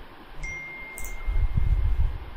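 WhatsApp desktop notification chime: a single high tone that starts about half a second in and rings on, over low rumbling noise that is loudest in the second half.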